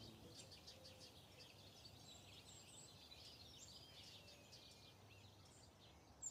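Faint birdsong: several birds chirping with short, high calls and trills throughout, over a faint low steady hum of background ambience.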